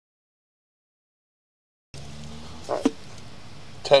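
Complete silence for about two seconds, then a steady low hum cuts in abruptly, with a short vocal sound just under a second later.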